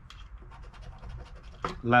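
A poker-chip-style scratcher coin scraping the coating off a scratch-off lottery ticket in quick, short strokes, followed near the end by a spoken number.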